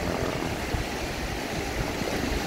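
Wind buffeting the phone's microphone in a steady low rumble, over the wash of small waves breaking on a sandy shore in a choppy sea.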